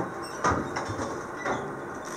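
Coal forge fire being stirred with an iron poker: a steady rushing noise of the fire, with a few scrapes and knocks of iron on coal, the two loudest about a second apart.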